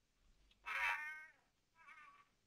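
A cat meows twice: one call about two-thirds of a second in that falls in pitch at its end, and a shorter falling meow near the end.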